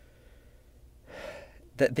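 A man's short, breathy gasp about a second in, after a near-silent pause.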